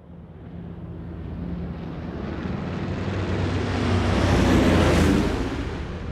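Propeller aircraft engines droning under a rush of wind, swelling up from silence to a peak about five seconds in, then easing off.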